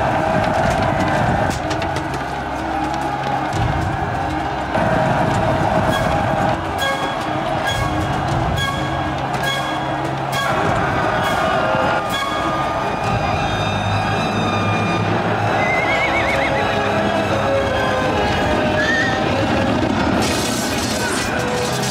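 Horses neighing with clattering hoofbeats and many sharp knocks, over film music. A wavering whinny stands out about sixteen seconds in.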